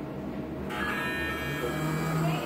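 An electronic buzz, like an X-ray unit's exposure signal, starts sharply under a second in and holds steady. A lower hum joins it near the end.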